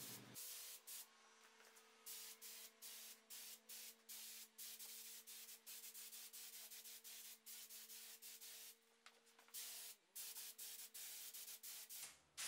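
Very faint short hisses of an air-fed paint sprayer misting paint in quick repeated passes, over a faint steady hum.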